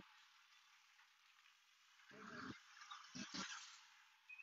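Near silence: the sound drops out for about two seconds, then faint, intermittent background sounds come in.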